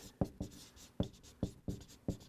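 Someone writing by hand: several irregular sharp taps with faint scratching between them.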